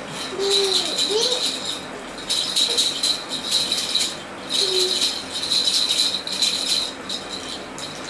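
A toy rattle shaken in four spells of rapid rattling with a high ringing edge, with short pauses between them.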